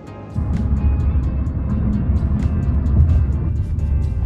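Background music with a steady beat throughout; about a third of a second in, the loud low rumble of a car on the road comes in suddenly, heard from inside the moving car.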